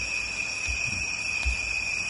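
Pause in a speech recording: a steady high-pitched whine over an even background hiss, with a couple of faint low thuds.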